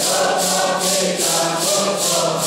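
A congregation singing a Santo Daime hymn together, with maracas shaken to a steady beat of about three to four strokes a second.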